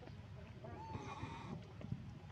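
A baby macaque crying: a thin, wavering call lasting about a second.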